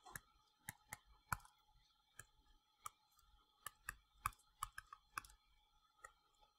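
Stylus tip tapping and ticking on a tablet's touchscreen while handwriting. The clicks are faint and irregular, sometimes several a second.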